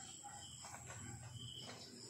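Faint crickets chirring steadily, a thin, even high-pitched trill.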